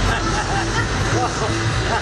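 Short exclamations and chatter from several people, over background music with short notes repeating at a steady pace.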